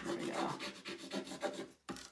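A hand tool rubbing a rub-on decor transfer down onto a painted wooden board, in rapid short scraping strokes, several a second, that pause briefly just before the end.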